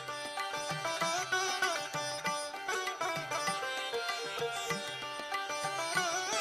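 Indian classical instrumental music: a sitar playing plucked notes with sliding pitch bends over a low repeating pulse.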